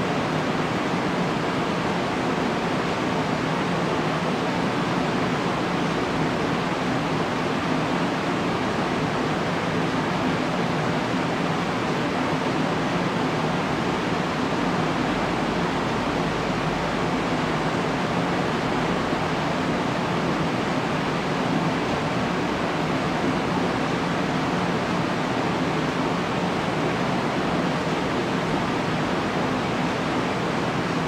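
A steady, even rushing noise that does not change, with a faint low hum underneath.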